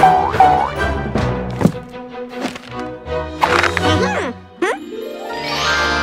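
Cartoon soundtrack: playful music with springy, pitch-bending sound effects and the creatures' wordless squeaky vocal noises, ending in a long rising sweep in the last second or so.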